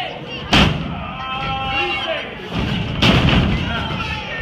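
Two sharp impacts from wrestlers grappling in the ring, the louder about half a second in and the second near the three-second mark, with voices shouting from the crowd between them.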